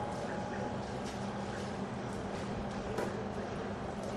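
Steady background hum and room noise, with a few faint clicks and one slightly louder click about three seconds in.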